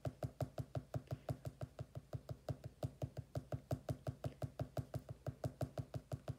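A pen tip dabbing dots onto sketchbook paper in quick, even taps, about six or seven a second: stippling, building up shading dot by dot.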